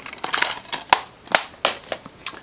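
Plastic DVD keep case being snapped shut and handled: a quick rustle followed by several sharp plastic clicks and knocks.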